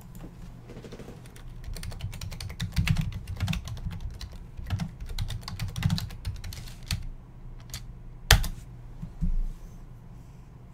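Typing on a computer keyboard: rapid runs of key clicks, then a single louder knock near the end.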